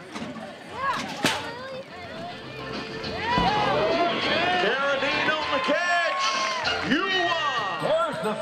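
Music with voices over it, growing louder about three seconds in.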